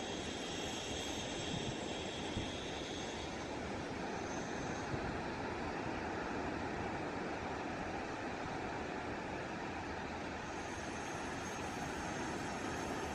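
Steady, even wash of sea surf breaking along a flat sandy beach.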